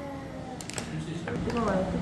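Soft speech and background talk at a table, with a few faint clicks a little over half a second in.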